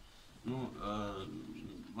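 A man's low, drawn-out hummed hesitation sound, an 'mmm' or 'eh' whose pitch arches up and down, starting about half a second in and lasting under a second.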